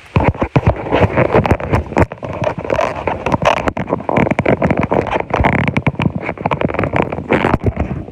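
Handling noise on a phone's microphone: dense, irregular rustling, scraping and knocking as the phone is gripped and moved about.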